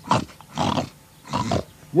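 A voice actor making cartoon pig grunts: three short, rough grunts about two-thirds of a second apart, the hungry pigs' dreadful noise.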